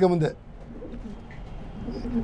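Pigeons cooing faintly in the pause after a man's voice stops.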